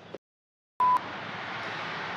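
Dead silence, then a short single electronic beep at one steady pitch about three quarters of a second in, followed by a steady background hiss.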